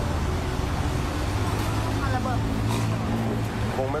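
Street traffic noise with a steady low hum, and faint voices about two seconds in.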